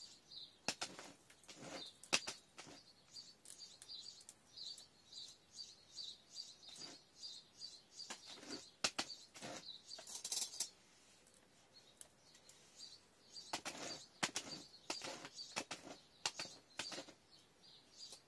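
Hands pressing and adding gritty potting soil around a plant stem in a pot: a run of short crunches and rustles, easing off for a moment about two thirds through. A small bird chirps repeatedly in the background.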